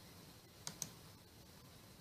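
Two quick, sharp clicks of a computer mouse button, close together like a double-click, about two-thirds of a second in.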